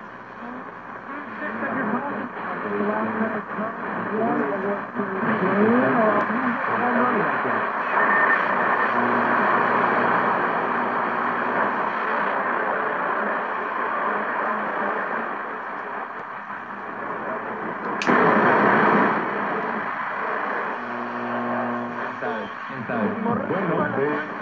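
Hammarlund HQ-100A valve communications receiver being tuned across the band: a steady hiss of static, with snatches of garbled voices and wavering whistles drifting in and out as stations pass. About three quarters of the way through there is a sharp click, then a short, louder rush of static.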